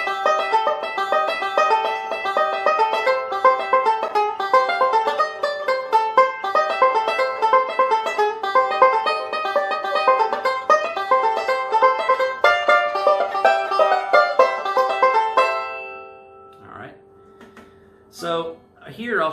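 Five-string resonator banjo, fingerpicked in a fast, continuous roll of notes, playing an up-the-neck bluegrass break. The playing stops about 15 seconds in, and the last notes ring out and fade.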